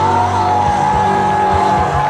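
Live blues-rock band with an electric guitar sustaining one long high bent note, slid up into just at the start and held steady over the drums and bass.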